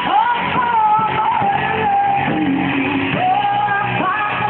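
A woman singing long held notes into a microphone over a live band. The recording is dull and muffled, with no treble.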